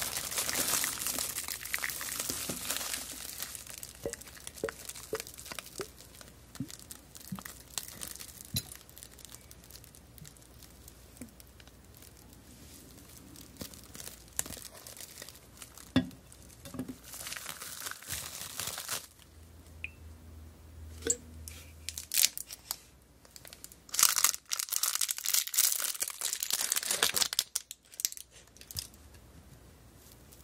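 Clear plastic film crinkling and crackling as hands scrunch it around a glass. It is loudest in the first few seconds, drops to sparse crackles, then comes in two more loud bursts past the middle and again near the end.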